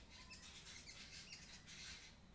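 Near silence: faint room tone with a few faint, short, high chirps.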